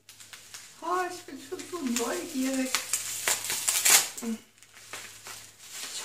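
Clear plastic wrapping crinkling and rustling as it is pulled apart by hand to free a small packed item, densest and loudest around three to four seconds in.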